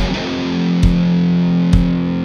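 Heavy stoner rock played live: a heavily distorted electric guitar, played through an Orange amp, holds low, sustained notes over drum hits about once every 0.9 seconds.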